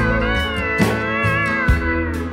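Pedal steel guitar playing a lead of sliding, bending notes over a country band, with upright bass underneath and a drum hit landing a little under once a second.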